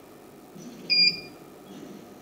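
A single short, high beep about a second in, over faint background hiss.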